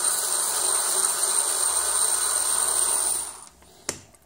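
Electric screwdriver running steadily with a thin high whine as it backs screws out of the enclosure's end panel. The motor stops a little after three seconds in, and a single click follows just before the end.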